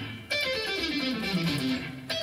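Electric guitar playing a quick descending pentatonic scale run, single notes stepping steadily down in pitch, starting about a third of a second in after a short gap.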